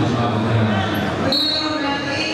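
Crowd voices in a large hall, with a short, high, steady whistle blast about a second and a half in: the referee's whistle starting the wrestling bout.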